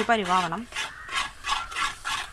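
A spatula scraping and stirring thick jackfruit (chakka) halwa in a metal pan, in repeated rasping strokes about three a second.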